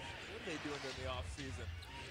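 Audio of a televised basketball game, playing quietly: a commentator talking over arena crowd noise, with the bounce of a dribbled ball.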